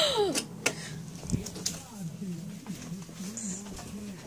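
Toaster lever pushed down with a short click within the first second, after a gasp at the very start; then only a faint, wavering voice in the background.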